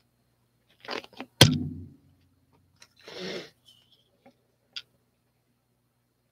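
Handling noises from a plastic container on a work table: a short rustle, then one sharp knock with a brief low ring about one and a half seconds in, another rustle a little later and a few light clicks.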